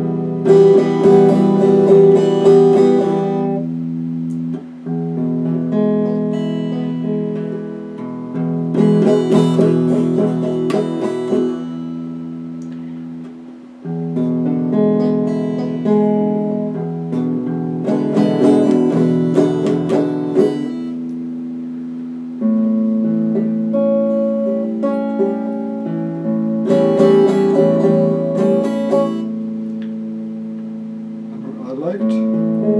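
Solo electric guitar improvising in E. Runs of quickly picked notes come about every eight or nine seconds, with chords and notes left ringing between them.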